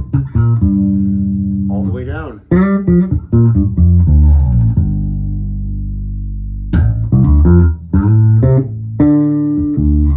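Early-2000s Landing L-5 five-string electric bass with EMG active pickups, played through an amp: a run of plucked notes with a pitch slide about two seconds in. One long note rings for about two seconds in the middle, then the playing goes on with more short notes.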